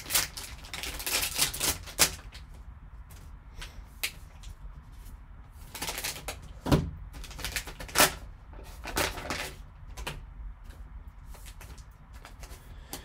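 Foil trading-card pack wrapper crinkling and tearing open, densely crackling for the first two seconds. Then come separate sharp clicks and rustles every second or so as the cards and their plastic holders are handled.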